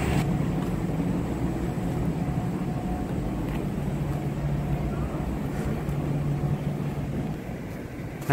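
A steady low mechanical hum over a low rumble, easing slightly near the end.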